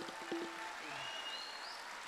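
Concert-hall audience applauding, a faint, steady sound of many hands clapping.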